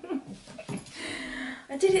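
A woman's wordless, strained vocal sounds of frustration while struggling to cut fabric, including one held note partway through, then the start of speech near the end.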